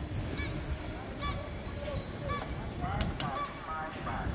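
Birds calling over the low rumble of a city street: a run of six quick, high rising chirps in the first two seconds, with a few other short calls scattered through.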